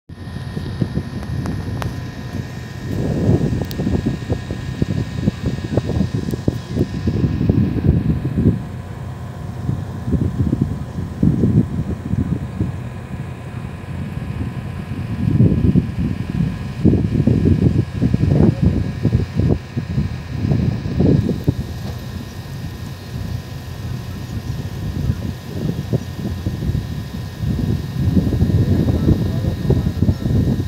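Wind buffeting the phone's microphone in uneven gusts, with a faint steady high tone underneath.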